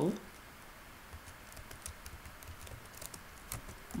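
Computer keyboard being typed on: faint, irregular keystrokes as a word is typed.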